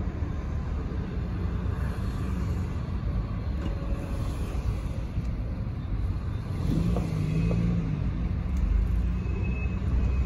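Low, steady car rumble heard from inside the cabin as the car drives slowly. A short low hum rises and falls about seven seconds in.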